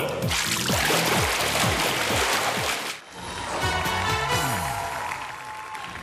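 Show music with a beat throughout. For about the first three seconds a loud rush of splashing pool water runs over it, then stops abruptly. The rest is music alone, a bright tune over the beat.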